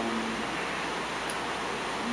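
Steady hiss of background room noise, with a person's voice briefly holding a low note and trailing off at the very start, and a faint tick about a second and a half in.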